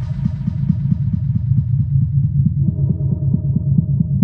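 Techno DJ mix in a filtered breakdown: the highs are cut away, leaving a pulsing, throbbing bass line. A sustained synth tone comes back in about two-thirds of the way through.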